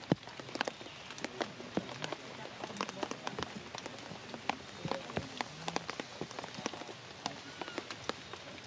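Steady rainfall on forest leaves and rock, with many sharp, irregular drop impacts over an even hiss.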